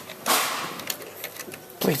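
A short hiss of noise about a quarter-second in, then a few light clicks as multimeter test-probe tips are placed on the terminal screws of a plastic light-switch box; a voice starts near the end.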